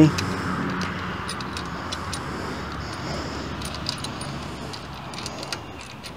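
Light metallic clicks and jingling as a fat-tyre e-bike's front wheel is worked into the fork, its axle, washers and brake disc knocking against the dropouts. Under them, a low hum fades over the first couple of seconds.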